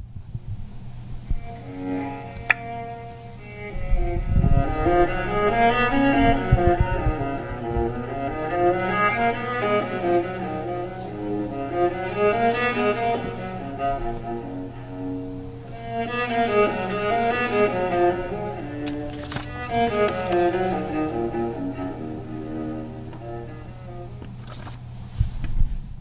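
A recording of solo cello music, bowed, played back and picked up by a microphone held toward the playback, with a steady low hum under it. There are a few low thumps about four seconds in and again near the end.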